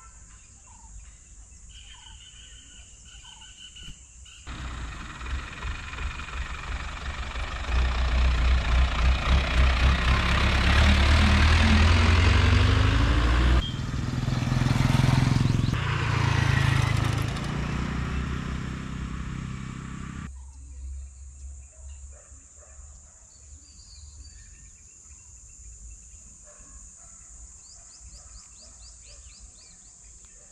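Faint birds chirping, then about four seconds in a motor vehicle's engine and road noise start suddenly and grow loud, the engine pitch rising as it speeds up, before cutting off abruptly about twenty seconds in, leaving faint birdsong again.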